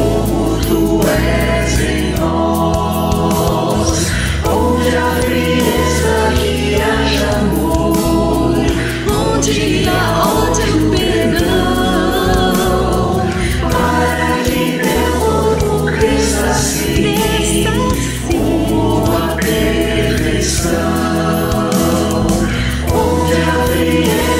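Mixed choir of men's and women's voices singing a Christian worship song, accompanied by keyboard, acoustic guitar, bass guitar and drums.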